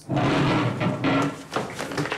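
A sudden clatter of a school chair and a body hitting the floor as a boy slumps off his seat, with chairs and desks scraping. It dies down after about a second and a half.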